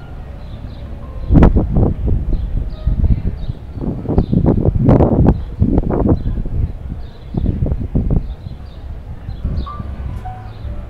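Irregular low rumbling buffets and thumps on a handheld camera's microphone, starting about a second in and dying down near the end, with a few sharp clicks among them.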